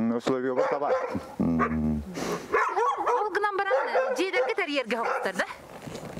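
Speech: a man and a woman talking in an interview, in Sakha (Yakut).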